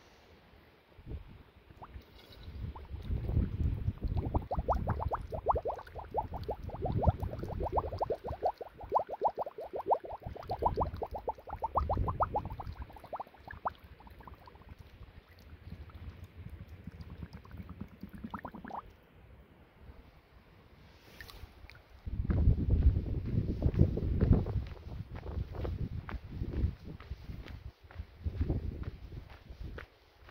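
Plastic water bottle held under the surface of a pool as it fills: rapid gurgling glugs as air bubbles out of its neck for about ten seconds, with a few more glugs later. Near the end comes a few seconds of low rumbling noise.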